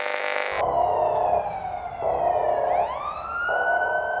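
Siren sound effect: a wail falling in pitch, then sweeping back up a little under three seconds in and holding high. It opens with an electronic buzz that cuts off about half a second in.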